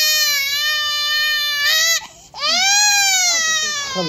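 Young baby crying during a vaccination: two long, high-pitched wails with a short catch of breath between them about two seconds in.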